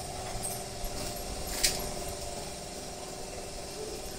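Steady low background hum with one short, sharp click about a second and a half in.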